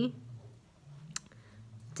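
A short pause in reading aloud, with quiet small-room tone and a faint low hum, broken by a single sharp click a little over a second in.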